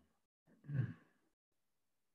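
A man's single brief, faint vocal sound a little over half a second in, such as an exhaled sigh or a murmur.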